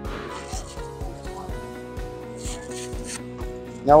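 Background music with a steady beat, and two brief rasping scrapes, about half a second in and near three seconds in, of a Velcro polishing pad being handled on a polisher's hook-and-loop backing plate.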